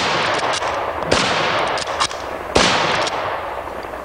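Three shots from a bolt-action Enfield rifle chambered in .308 Winchester, fired fairly rapidly about a second and a half apart. Each crack is followed by a long echoing decay.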